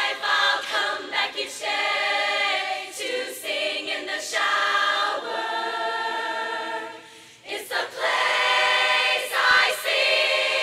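Large women's chorus singing a cappella, with a short break about seven seconds in before the voices come back in louder.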